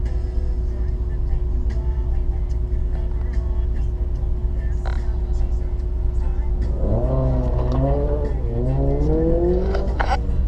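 1994 Camaro Z28's LT1 V8 idling with a steady low rumble inside the cabin. About seven seconds in, the revs come up and the car pulls away, the engine note climbing steadily as it accelerates.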